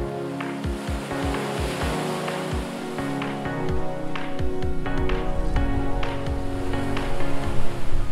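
Background music with a steady beat and held chords.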